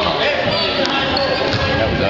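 A basketball bouncing on a hardwood gym floor, with a sharp knock a little under a second in, over spectators' voices echoing in the gym.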